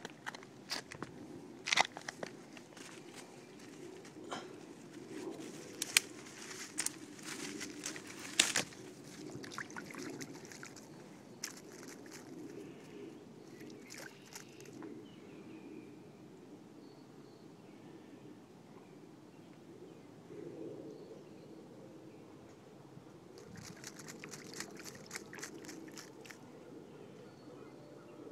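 Irregular sharp crunches and clicks, clustered in the first half and again near the end, over a low steady rumble.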